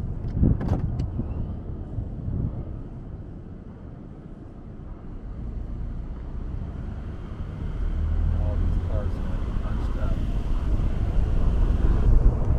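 Road and wind noise from a moving car: a steady low rumble that grows louder about two-thirds of the way in, with a few clicks just after the start.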